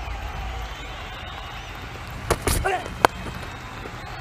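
A low steady rumble of stadium ambience, broken about two and a half seconds in by a brief noisy burst. About three seconds in comes one sharp crack: a cricket bat striking the ball.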